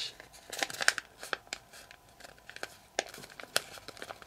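Origami paper being folded and creased by hand: an irregular run of short crinkles and crackles as a flap is pressed flat against an edge.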